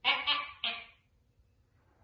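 Two short, loud vocal calls in quick succession in the first second, then quiet room noise.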